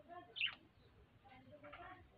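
A single short bird chirp, falling sharply in pitch, about half a second in.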